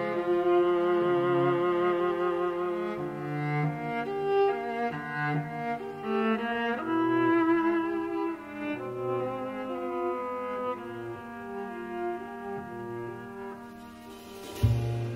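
A string ensemble of violins, cellos and double bass bowing sustained, overlapping chords that shift every second or so, growing quieter toward the end.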